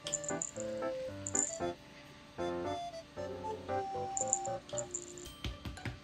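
Background music: a light, cheerful tune of short separate notes.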